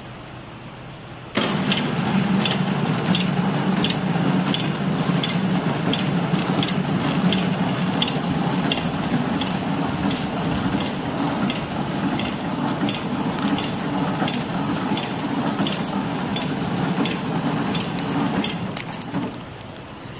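Horizontal flow-wrapping (pillow-pack) machine running, a steady mechanical hum with a regular click about twice a second from its cycling mechanism. It starts suddenly about a second and a half in and fades out just before the end.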